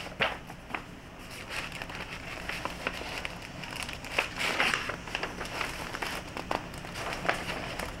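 Paper instruction sheets and plastic packaging rustling and crinkling as they are pulled from a box and leafed through, with scattered small clicks.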